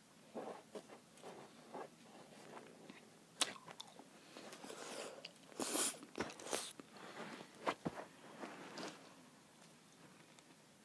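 A person chewing a mouthful of sour Skittles: irregular wet mouth sounds, smacks and clicks, with a louder noisy burst about six seconds in.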